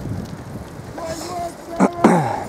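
Wind on the microphone and a bicycle rolling along the bank, with faint distant shouting about a second in and a sharp knock near the end.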